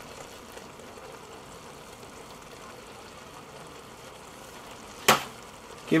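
Onions cooking in a cast-iron Dutch oven over high heat, a steady soft sizzle and bubble, with one sharp knock about five seconds in.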